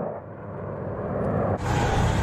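Military vehicle noise from battle footage, a steady noisy haze that grows louder about a second and a half in.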